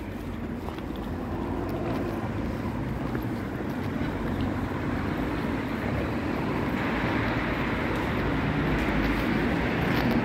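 Road traffic rumble, growing steadily louder.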